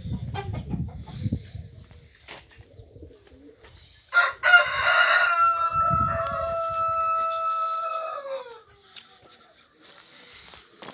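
A rooster crowing: one long call beginning about four seconds in, held for some four seconds and falling away at the end.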